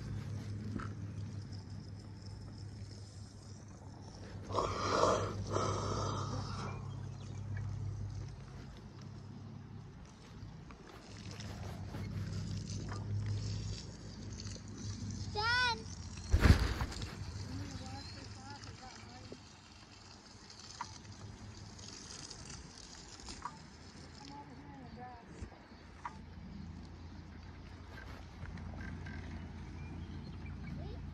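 Muffled rustling and handling noise from a covered camera over a steady low hum, with faint voices. About 15 seconds in there is a short high-pitched call, and a sharp knock follows just after it.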